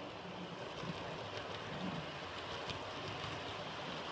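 Bemo model railway trains running on the layout track: a steady low rumble of the small electric motors and metal wheels rolling on the rails, with a few light clicks.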